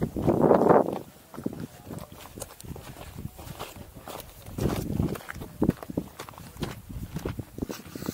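Footsteps on the loose rock and gravel of a steep mountain trail, walking downhill in uneven, irregular steps. A brief loud rush of noise fills the first second.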